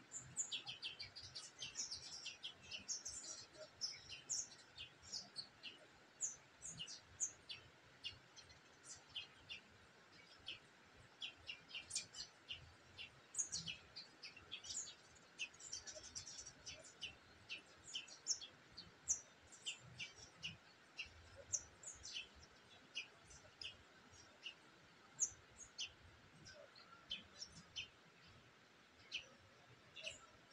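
Small birds chirping: many short, high chirps, several a second at times, keeping on throughout.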